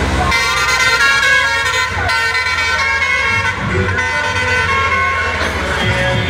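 A vehicle horn sounds in a long, steady blast starting just after the beginning, over a continuous low engine hum of road traffic. Shorter, fainter horn tones follow.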